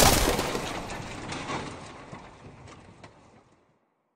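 Intro sound effect: a sudden heavy crash that fades away over about three and a half seconds, with scattered clicks and clatter through the tail, like a pile of blocks tumbling.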